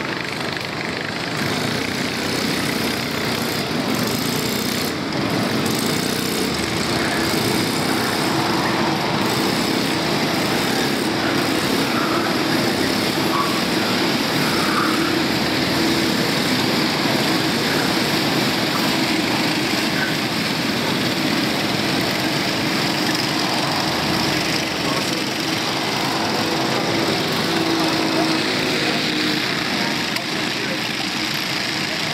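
Racing kart engines running on track, a single kart and then a pack of karts, making a steady, continuous engine drone.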